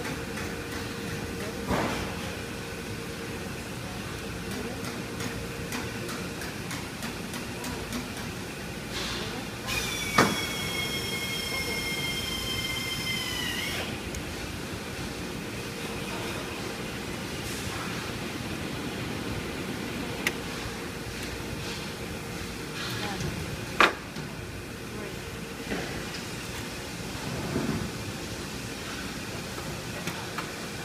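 Factory floor machinery: a steady hum with scattered clicks and knocks, and a high squeal that lasts about four seconds near the middle and dips in pitch as it stops.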